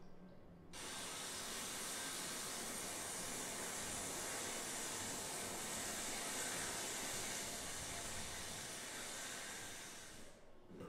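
Water running hard from a tap into a sink: a steady, even rush that starts abruptly just under a second in and fades out near the end.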